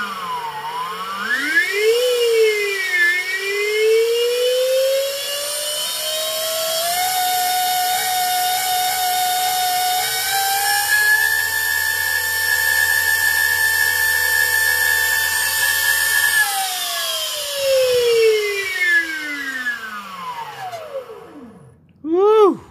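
Brushless DC electric mid-drive motor spinning up with no load, its whine made of several tones that rise and fall together with motor speed. The pitch climbs with a couple of dips in the first few seconds, holds steady through the middle, steps up once more, then glides down as the motor coasts to a stop near the end.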